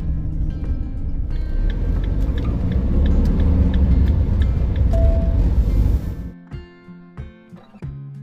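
Road and engine rumble inside a moving camper van's cab, with background music over it. About six seconds in the road noise cuts off suddenly, leaving only guitar music.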